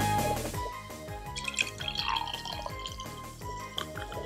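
Beer poured from a can into a glass: splashing and fizzing from about a second in, over quieter background music.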